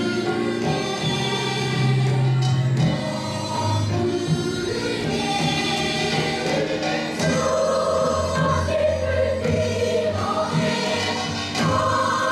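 Children's choir, joined by adult voices, singing a Korean song in traditional gugak style over held low accompaniment notes.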